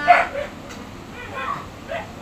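A dog barks once, sharply, right at the start, then gives fainter, higher calls about a second and a half in.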